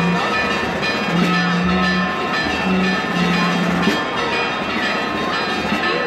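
Church bells ringing steadily, many overlapping tones clanging together, over the hubbub of a large crowd. A low held note sounds on and off during the first four seconds.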